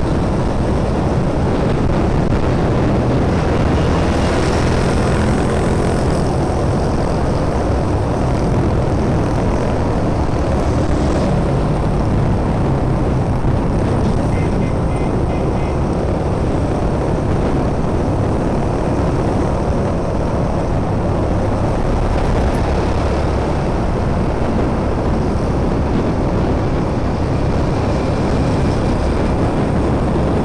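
Steady drone of a motorbike's engine mixed with wind rush, heard from the rider's seat while cruising in traffic, with no break or change in level.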